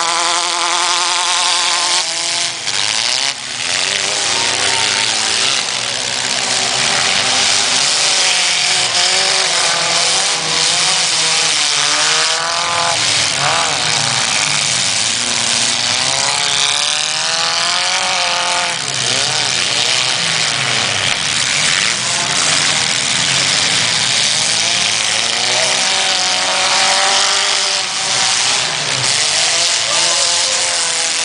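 Engines of several compact demolition-derby cars revving at once, their pitches repeatedly rising and falling, loud the whole time.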